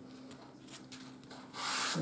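Tailor's chalk scraping across cloth as a figure is written: a short dry rasp about a second and a half in, after a few faint light taps.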